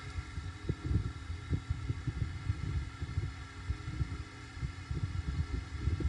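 Low, irregular rumbling and soft thuds under a steady electrical hum: the background noise of an open microphone on a call.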